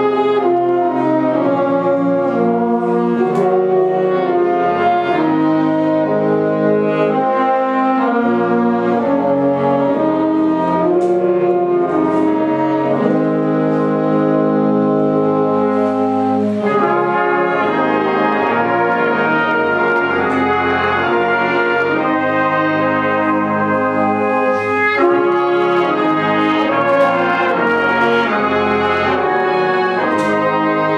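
A wind band of brass and woodwinds, with flute among them, playing a slow passage in held chords that change every second or two, at a steady, full level.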